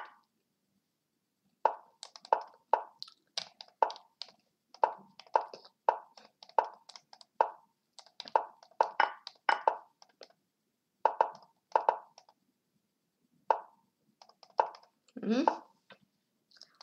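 Lichess chess-site move sounds: a rapid, uneven run of short wooden clicks, about one or two a second, as pieces are moved and captured in a fast bullet game. Near the end a brief rising voiced 'hm' is heard.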